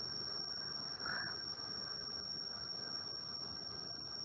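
Dead video-call audio: a steady high-pitched electronic whine over faint hiss, with no voice, because the lecturer's audio has dropped out of the call.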